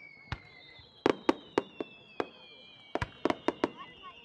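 Daytime fireworks shells bursting overhead: a rapid series of sharp bangs, about a dozen, bunched about a second in and again near three seconds in. Under them run several high whistles that slowly fall in pitch.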